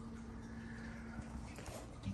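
Faint knocks as the metal-framed cabinet door of an aquarium stand is pulled open, over a low steady hum that fades out about halfway through.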